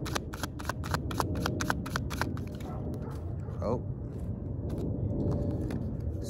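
A deck of oracle cards shuffled by hand: a quick, even run of crisp card snaps, about six a second, that stops a little over two seconds in. A low steady background rumble follows, with a brief murmured voice.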